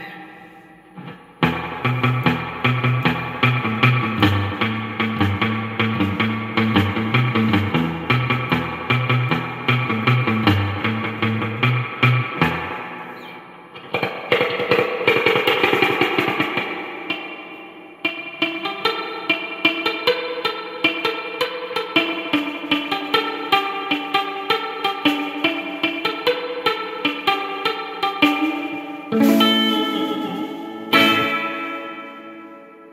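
Electric guitar played through a Vox AC15CH valve amp head with lots of spring reverb, its reverb return modded for more gain (C37 changed to 100 pF, R52 to 330K). A riff with low bass notes under chords comes first, then a chord rings out into a reverb wash about halfway, then a picked single-note line.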